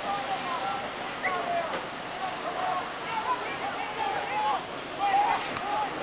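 Indistinct voices of players and sideline spectators calling and chattering, several overlapping, over the steady hiss of old video tape, with a louder call shortly after five seconds.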